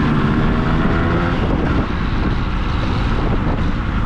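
Yamaha RX100 two-stroke single-cylinder motorcycle running under way at steady speed, its engine note strongest in the first second or so, with wind rushing over the microphone.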